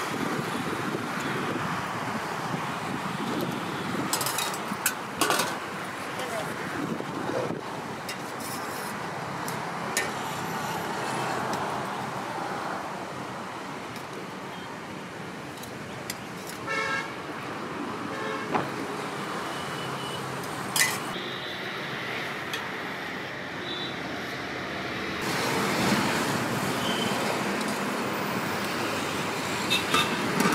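Steady roadside traffic noise with passing vehicles and occasional horn toots, under sharp clinks of a steel serving ladle and lids against steel food pots.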